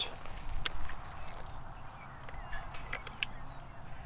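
Low outdoor rumble of wind on the microphone, with a few faint clicks about half a second in and again around three seconds in.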